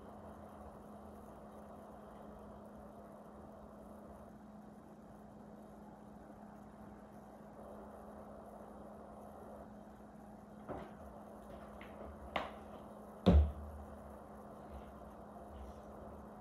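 Quiet room tone with a steady low hum, broken by a few light clicks and one louder knock about 13 seconds in: a plastic squeeze bottle of caramel sauce being handled and set down on the counter after drizzling the tarts.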